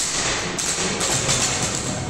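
A loaded barbell with rubber bumper plates dropped onto a rubber gym floor: one sharp thud right at the start, followed by steady background noise.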